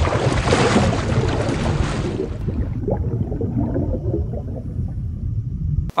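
Water-plunge sound effect: a rushing splash that fades after about two seconds into low underwater bubbling and rumble, cutting off abruptly just before the end.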